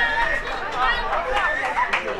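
Several young voices shouting and cheering over one another, a football team celebrating a goal.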